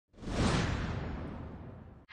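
A whoosh sound effect: a rush of noise that swells quickly in the first half second and then slowly fades away.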